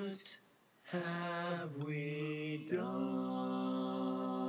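Young male voices singing long, held, wordless notes together. There is a short break about half a second in, and the notes step to a new pitch twice later on.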